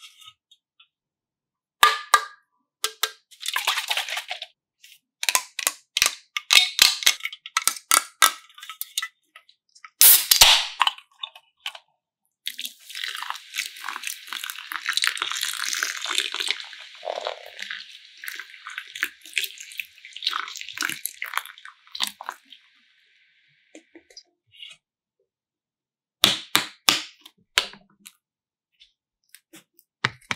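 Clicks and taps of soda cans and bottles being handled, with a sharp crack about ten seconds in. Then soda pours from a can onto a tray of glitter, a steady fizzing pour lasting about ten seconds. A few more sharp clicks come near the end as the next bottle is taken up.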